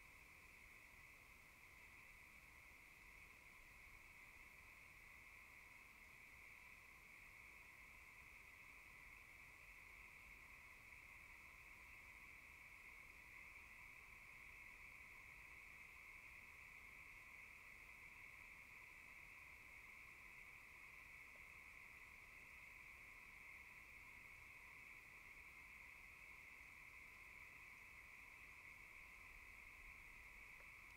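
Near silence with a faint, steady, unchanging chorus of night insects.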